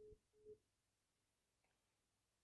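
Two faint, short telephone beeps about half a second apart at the very start, the tone of a call that has ended after its text-to-speech message. Then near silence.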